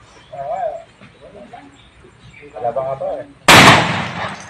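A single shotgun shot about three and a half seconds in, by far the loudest sound, tailing off in a short echo.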